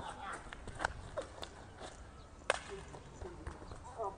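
Faint voices in short snatches, with scattered sharp clicks; the loudest click comes about two and a half seconds in.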